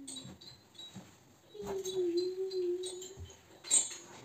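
One drawn-out vocal note, held nearly level for about a second and a half, then a sharp clink of dishes near the end.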